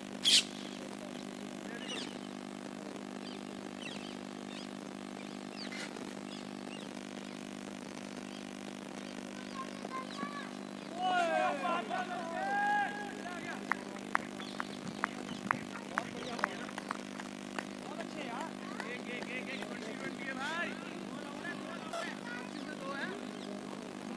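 Cricket players' shouted calls on the field, then a quick run of sharp hand claps, over a steady low hum. A single sharp knock sounds right at the start.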